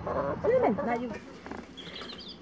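Quiet voices during the first second or so, fading to low background sound in the second half.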